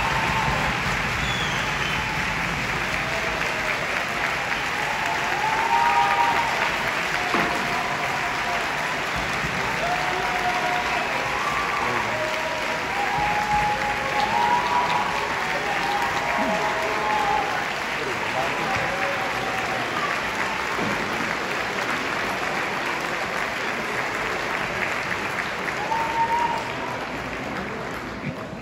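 A large audience applauding steadily, with scattered voices calling out over the clapping; it thins a little near the end.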